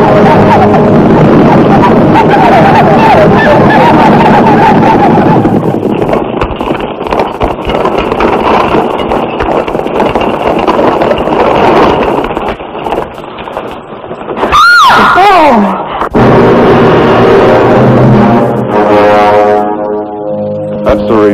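Film battle soundtrack: many voices yelling and sharp shots over the din of a mounted charge, mixed with music. About three-quarters of the way through comes one long cry that rises and then falls. After it, sustained orchestral chords take over.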